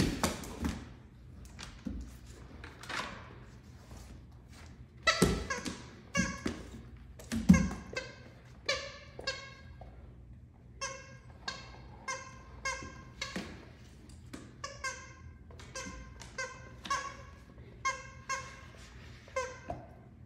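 Squeakers inside a stuffing-free snake dog toy squeaking over and over in quick runs as the dogs bite and tug it, with a couple of heavy thumps on the hardwood floor in the first half.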